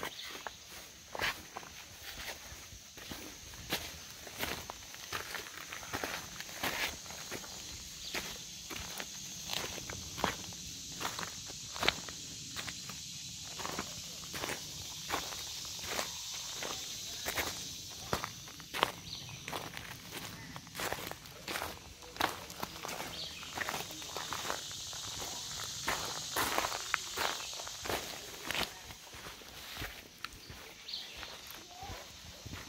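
A hiker's footsteps walking steadily along a trail, an irregular series of steps a little more than one a second, with a steady high-pitched drone in the background.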